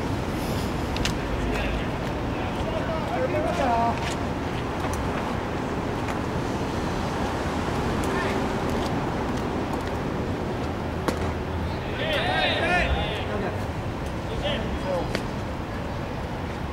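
Players' voices calling and shouting across a baseball field over steady outdoor background noise. A loud, high-pitched shout comes about twelve seconds in, with a few sharp clicks scattered between the calls.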